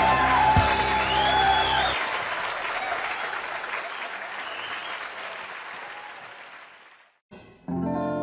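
A live rock and roll recording ends on a held chord over audience applause. The applause goes on alone and fades away over about five seconds. After a short silence the next song starts just before the end.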